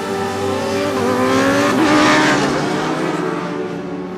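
Sport motorcycle engine pulling hard as the bike passes at speed, its pitch rising and the sound loudest about two seconds in, then fading.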